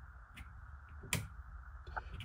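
Two clicks of a school bus dashboard switch, about three quarters of a second apart, the second louder, as the illuminated school bus sign is switched.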